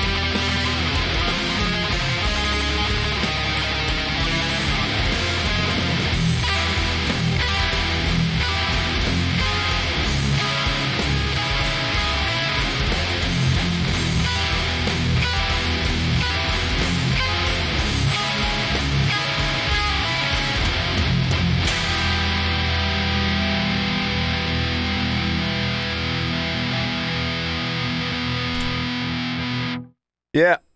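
Distorted electric guitar playing heavy metal riffs. About eight seconds before the end it moves to longer held chords, then stops abruptly.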